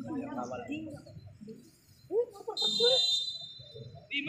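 Voices calling out across a football pitch. About two and a half seconds in comes one short, steady, shrill whistle blast, typical of a referee's whistle stopping play.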